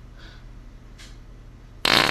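A short, loud fart sound near the end, after a quiet stretch.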